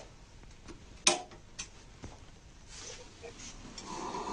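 A sharp click about a second in, followed by a few fainter ticks, as the motorized Ambu-bag ventilator is started.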